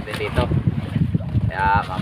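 A steady low rumble with wind on the microphone aboard an outrigger fishing boat at sea, under a man's talking.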